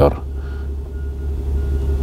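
A car engine idling, a steady low hum.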